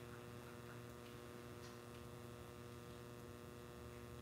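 Near silence apart from a faint, steady electrical mains hum from the microphone and sound system, holding several steady tones.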